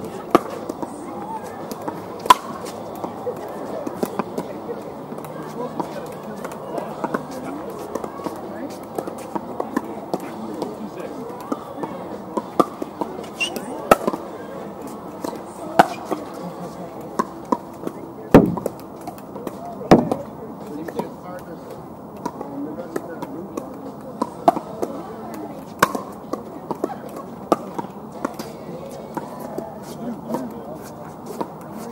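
Pickleball paddles hitting plastic pickleballs: sharp pops at irregular intervals from several games at once, with a few louder hits close by, over indistinct talk of players on the courts.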